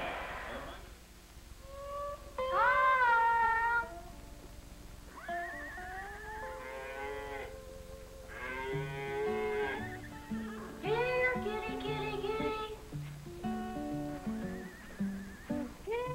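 Music: a boy's solo singing voice in slow phrases of long held notes with vibrato, over a bass line and plucked-string accompaniment.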